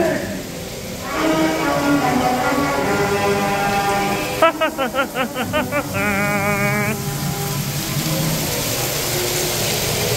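Ride soundtrack playing through speakers: long held musical tones, broken about halfway through by a rapid pulsing, warbling sound effect, over a steady hiss.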